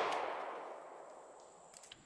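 The fading echo of a single 9mm pistol shot from a Bul Armory SAS II Comp, dying away over about a second and a half, with a few faint clicks near the end.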